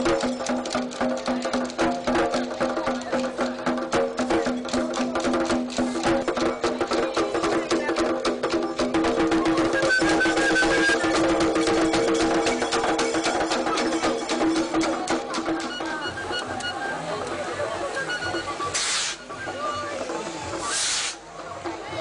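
Traditional drumming with fast, dense strokes under sustained chanted or sung tones. The music drops away near the end, and two short bursts of hissing follow.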